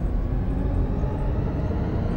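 A steady low rumble, with no distinct strikes or rhythm.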